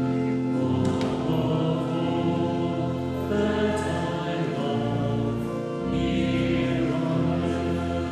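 Church choir singing a slow hymn with long held notes over a low, sustained accompaniment. It is the hymn sung while the altar is prepared and the gifts are brought up at Mass.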